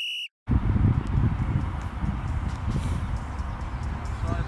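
Half a second of silence, then outdoor ambience: a steady low rumble of wind on the microphone, with a few faint ticks.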